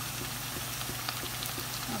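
Sliced onions, green chillies and spices cooking in oil and liquid in a frying pan: a steady sizzle and bubbling with small scattered pops.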